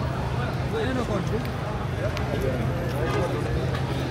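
Street hubbub: several people talking around the camera, with no single voice standing out, over a steady low hum of traffic.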